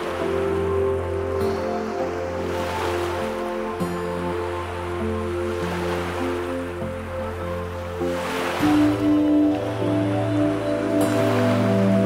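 Slow, calm ambient music of long held chords, with a change of chord about two-thirds of the way through, laid over a steady wash of ocean surf that swells a few times.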